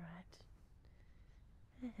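Low background noise with a woman's soft voice: a short, steady-pitched vocal sound at the very start and a spoken "Alright" near the end.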